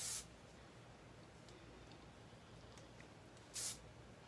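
Aerosol hairspray can sprayed in two short hisses, one at the very start and one about three and a half seconds in.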